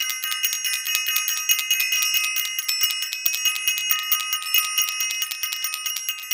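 A bell rung rapidly and continuously, about ten strikes a second, its several bright tones ringing on between strikes.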